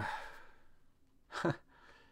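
A man's breathy sigh that fades over about half a second, followed about a second and a half in by a short, hesitant "uh".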